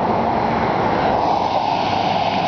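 Road traffic: a steady rush of tyre and engine noise from a vehicle going by on the road.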